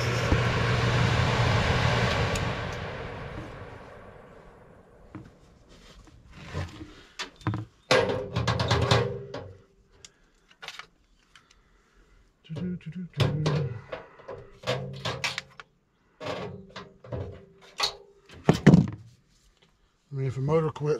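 Furnace blower motor and wheel coasting down after the power is cut, the hum and air rush fading away over about four seconds. Then come scattered clicks and clatter of hands and pliers working at the wiring to get at the blower motor's run capacitor.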